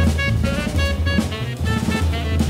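Live jazz trio playing: a saxophone runs through a quick line of short notes over walking double bass and drum kit with cymbals.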